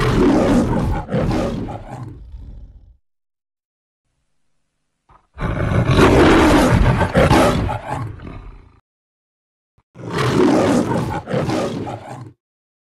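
The MGM lion's trademark roar from the studio logo, played three times. There are three separate roaring spells, each about three seconds long, with silence of about two seconds between them.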